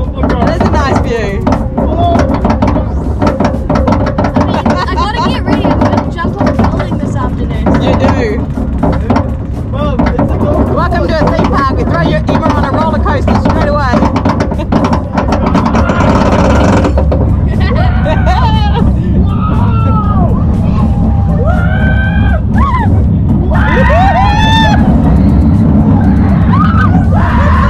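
Loud steady rumble and rushing air of a thrill ride in motion, heard on an onboard camera, with riders' shrieks and yells rising and falling in the second half.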